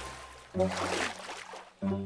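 A light cartoon splash as characters dunk their heads under the water, then a low held musical tone under a voice counting 'one'.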